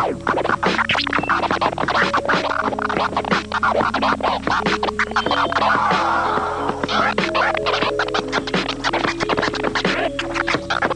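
Vinyl record scratching on a turntable, many quick cuts worked against a mixer, over a looping backing track with a repeating melodic note pattern. A longer, noisier scratch stretch comes a little past the middle.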